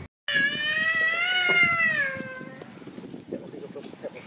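A single long, high-pitched cry of about two seconds, rising and then falling in pitch, followed by a few faint clicks.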